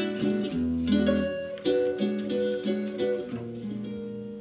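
Guitar and upright double bass playing a slow jazz intro: plucked guitar notes and chords ringing over a few deep bass notes.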